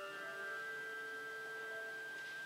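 Pipe organ playing a soft chord of steady held notes, with the notes moving to a new chord about half a second in.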